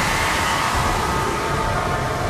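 Anime sound effect of glowing purple energy crackling upward: a steady rushing hiss with a faint held tone, over dramatic background music.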